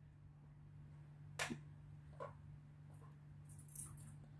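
Near silence: a steady low hum of room tone, broken by a short faint swish about a second and a half in and a weaker one just after two seconds.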